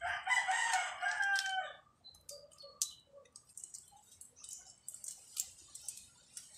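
A bird's long crowing call, a rooster's by its kind, slightly falling in pitch and lasting almost two seconds from the start. After it come only faint light clicks and ticks of small things being handled.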